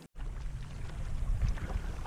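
Wind rumbling on the microphone over a small open fishing boat, with a few faint clicks; the sound drops out completely for a moment at the very start.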